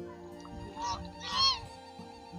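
A domestic goose honks twice, the second call louder, over faint background music.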